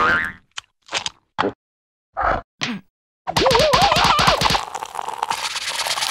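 Cartoon sound effects: a pop right at the start, then a string of short separate blips with silences between them, then a warbling, rising boing-like tone lasting about a second.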